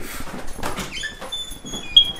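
Thin, high-pitched squeaks starting about a second in, the loudest and shortest right at the end, over faint handling knocks.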